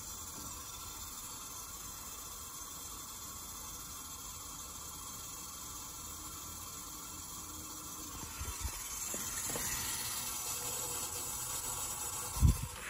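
Water running through the test rig's tubing and draining into a sink: a steady, fairly quiet hiss that grows a little louder about two-thirds of the way through, with a couple of faint clicks.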